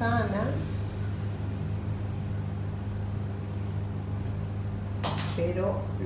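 A steady low electrical-sounding hum runs under everything, with a woman's voice briefly at the very start and again near the end, and a short breathy hiss about five seconds in.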